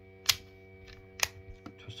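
Pieces of a physical 2^4 hypercube puzzle clicking together as it is handled during a gyro move: two sharp clicks about a second apart, then a few fainter ticks.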